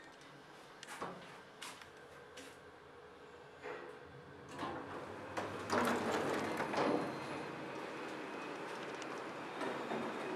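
Passenger lift arriving at a floor: a few light clicks and knocks, then from about four and a half seconds in a louder rattling stretch as the lift doors slide open, settling into a steady hum.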